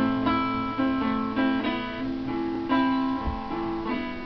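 Guitars playing an instrumental passage of a rock song, a run of picked notes that change every half second or so, with no singing.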